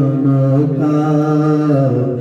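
A man's voice singing a devotional chant, holding one long drawn-out note that slides down near the end.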